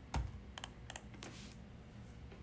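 About four sharp computer keyboard clicks in the first second and a half, the first the loudest with a dull thump, then quiet room tone.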